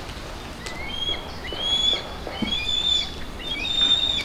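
A songbird singing: a run of clear whistled notes that glide up and down in several short phrases.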